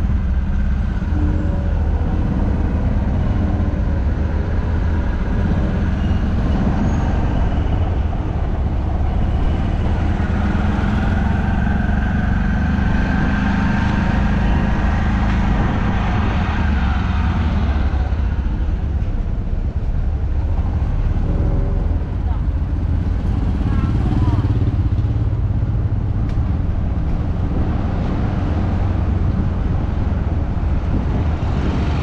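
Engine of a slow-moving vehicle running steadily, heard from on board, with the traffic of a busy city street and people's voices around it.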